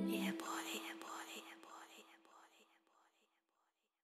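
The song's closing echo: a breathy, whisper-like vocal sound repeating about three times a second over a held low tone, dying away to silence about three seconds in.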